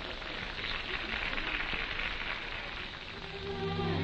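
A steady, even hiss on the film soundtrack for the first three seconds, then the film's background score comes in a little over three seconds in with sustained low held notes that grow louder.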